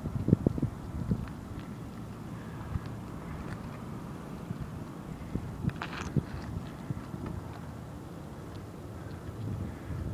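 Wind buffeting the microphone and a low rumble while riding a bicycle along a concrete jetty, with a few short knocks and rattles in the first second and another brief one about six seconds in.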